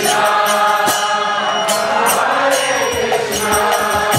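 Kirtan: voices chanting over the held chords of a harmonium. Hand cymbals clash and a drum beats in the second half, keeping time.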